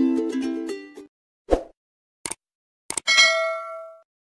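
Plucked-string intro music fades out in the first second. Then come the sound effects of a subscribe-button animation: a soft thump, two sharp mouse clicks and a notification-bell ding that rings and fades.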